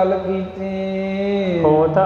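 A man's voice holding a long chanted note in the melodic delivery of Sikh katha, over a steady drone. The note slides down about one and a half seconds in, and a new syllable begins.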